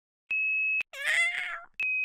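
A short steady high beep, then a single cat meow rising slightly in pitch, then a second identical beep, like the tones that open and close NASA radio transmissions.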